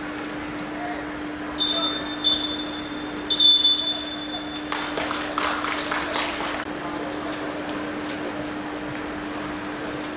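Referee's whistle blown three times, two short blasts and a longer third: the full-time whistle. A couple of seconds of shouting and clapping follow, over a steady low hum.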